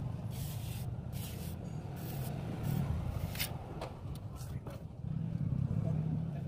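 Short scraping strokes of a hand and tool working wet cement plaster on a wall, repeating irregularly over a steady low rumble.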